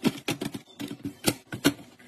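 Plastic snack cups being set down into a clear plastic organizer bin: a quick run of sharp plastic clicks and knocks.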